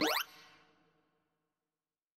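Synthesized sine-like beeps of a sorting-algorithm visualizer sweeping quickly up in pitch, the last of a series of rising sweeps, ending a fraction of a second in; the pitch climbs as the now fully sorted bars are read from low to high. The tone fades out over about a second and then there is silence.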